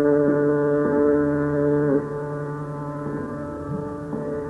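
Hindustani classical khayal singing in Raag Hem Kalyan: a male voice holds one long, steady note over a drone and breaks off about two seconds in. After that the drone carries on alone, with a few soft, low sliding vocal phrases near the end, in a muffled old recording.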